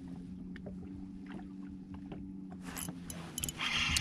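Bow-mounted electric trolling motor humming steadily, with a few light clicks. Near the end a spinning reel is cranked as a crappie is hooked.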